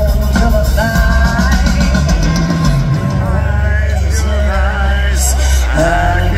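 Live rock band playing loud, recorded from the audience: a woman singing a wavering melodic line over electric bass, guitar and drums, with cymbal wash on top.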